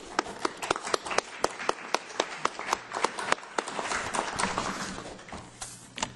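Audience applause: a group clapping, with one clapper close to the microphone at about four claps a second, thinning out near the end.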